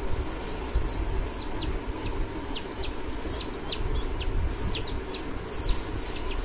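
Baby chicks peeping: a run of short, high cheeps that each fall in pitch, about two or three a second.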